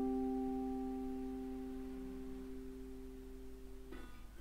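Mountain dulcimer's final chord ringing out and slowly fading away. The higher note stops abruptly just before the end.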